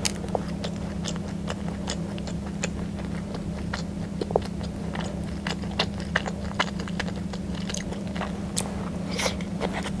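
Close-up mouth sounds of someone biting and chewing a soft chocolate-coated zang zang bao ('dirty bun'), with many small, irregular wet clicks and crackles. A steady low hum runs underneath.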